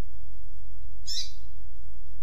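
Double-collared seedeater (coleiro) giving one short, high song phrase about a second in, part of a tui-tui-pia type song used as a training recording. A steady low hum runs underneath.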